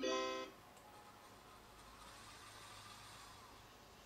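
A short electronic signal tone, about half a second long and rich in overtones, from the robot-learning system, marking the start of a demonstration to be recorded.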